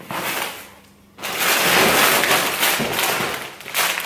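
Plastic grocery packaging rustling and crinkling as it is handled: a short burst, a brief lull, then a louder, longer stretch of crinkling from about a second in that stops just before the end.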